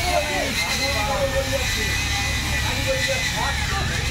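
Indistinct chatter of several overlapping voices over a steady background hum with a thin high whine.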